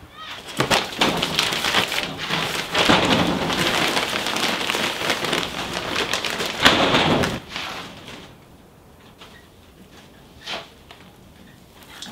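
Potting soil pouring and sliding out of a plastic bag into a ceramic pot, with the bag rustling, a steady rushing that lasts several seconds and then stops. A single short knock follows a few seconds later.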